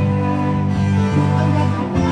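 A band playing music, guitar over held low notes that change about every half second.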